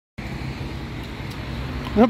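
Steady low rumble of street traffic, with no distinct events.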